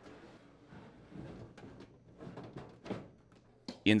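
Faint handling noise from a microwave oven being lifted and hooked onto its metal wall-mounting bracket: light rubbing and a few soft knocks, the clearest about three seconds in.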